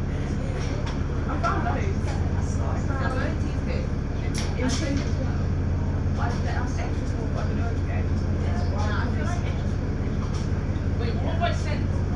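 VDL DB300 double-decker bus engine idling with a steady low hum, heard from inside the bus while it stands still, with passengers' voices talking over it.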